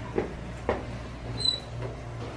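A few light knocks and a brief high squeak, over a steady low hum.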